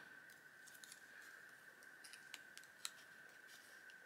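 Near silence: a faint steady high whine with a few light clicks of small craft pieces (a metal paper clip and a felt heart) being handled.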